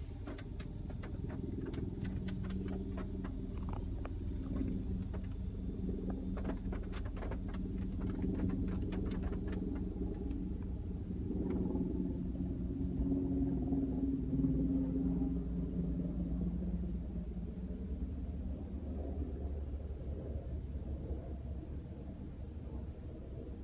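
Steady low rumble and hum inside a car with its engine running. Scattered light clicks during the first half.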